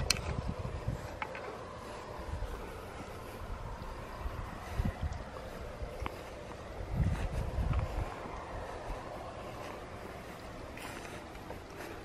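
Steady low outdoor rumble from wind on the microphone, with a few soft thumps as the handheld camera is moved, about five seconds in and again near seven to eight seconds.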